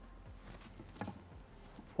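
Faint handling sounds with one small click about a second in, as a detachable rear-seat tablet is lifted out of its dock in the centre armrest.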